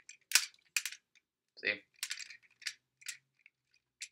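Several sharp clicks of hard plastic from a DX ToQ-Oh toy train combiner as its release button is pressed and a train piece is unclipped, about five clicks spread unevenly over a few seconds.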